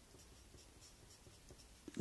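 Faint scratching of an HB pencil writing a few short strokes on a sheet of paper.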